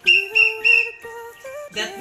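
A hand-held whistle blown three times in quick succession, short blasts about a third of a second apart within the first second: the signal to go back to the bus. Background music plays underneath.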